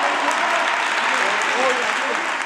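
A group of people clapping together in steady applause, with voices calling and talking through it.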